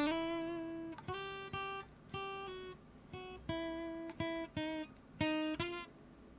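Electric guitar played through its piezo bridge pickup alone, magnetic pickups switched off, volume at half: a slow line of about a dozen single picked notes, each dying away before the next.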